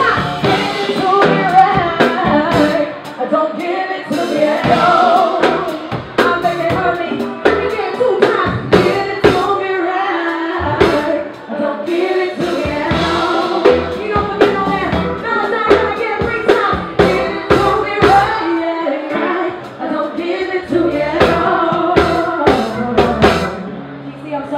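Live band music: a woman sings lead into a microphone over drums and keyboards, with drum hits throughout.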